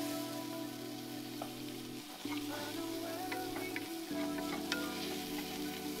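Spices, onion and garlic sizzling in a heavy-based pot as they are stirred, with a fine crackle throughout. Background music of sustained chords that change about every two seconds.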